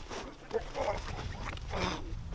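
Men grunting and exclaiming in short bursts while grappling, one thrown to the ground, with a rougher outburst near the end. A low rumble of wind on the microphone runs underneath.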